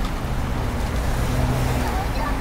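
Road traffic passing on a city street, with a steady low engine hum from a passing vehicle through most of the two seconds.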